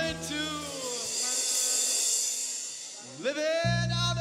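Live rock band with electric guitars, bass, drums and saxophone. The bass and band drop out about a second in, leaving only a faint high wash. A rising glide leads them back in near the end.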